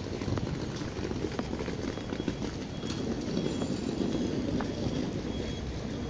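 Footsteps of someone walking on a paved path, under a steady rumble of wind and handling noise on a phone microphone carried by the walker.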